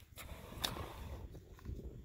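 Faint crunching of river gravel and pebbles being disturbed, with a couple of light clicks.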